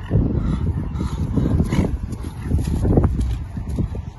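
A horse cantering close past on grass, its hoofbeats and breathing coming through as irregular low thuds and blows, mixed with wind rumbling on the microphone.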